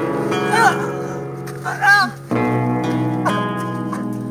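Background music of sustained guitar chords, changing chord about two seconds in, with a few short wordless voice sounds laid over it.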